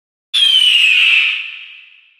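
Sound effect over an intro title card: a sudden hiss with a whistling tone that slides down in pitch, starting a moment in and fading away over about a second.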